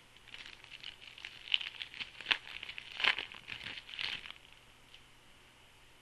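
A stack of 2010 Score trading cards being shuffled and flipped through by hand: quick rustling and clicking of card stock sliding and snapping against itself, with a few sharper snaps near the middle. It stops a little past four seconds in.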